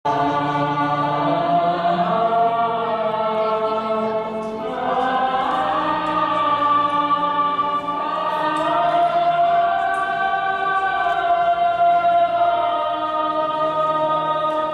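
Devotional-style choral singing: voices holding long sustained notes that slide slowly from one pitch to the next.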